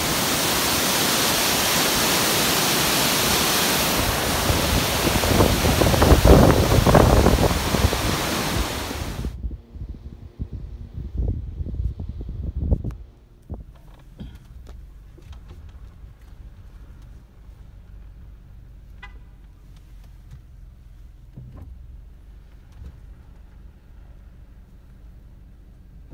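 Mountain creek waterfall: cold water pouring down, a loud even rush that stops abruptly about nine seconds in. After that there is only a faint low background with scattered knocks and a short tonal call a little past the middle.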